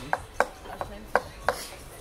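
Cutlery clinking against dishes: about five light, separate taps over a faint background.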